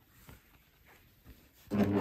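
Near silence with a few faint soft ticks. Then, near the end, a coverstitch sewing machine starts up and runs steadily, stitching a hem.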